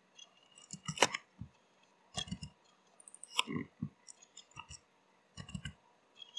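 Computer keyboard keys and mouse buttons clicking in short clusters, with the loudest clicks about a second in and again past the middle.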